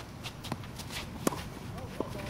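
Tennis rally on a hard court: a sharp crack of a ball struck by a racket about a second and a quarter in, a lighter knock about half a second in, and the player's quick footsteps on the court.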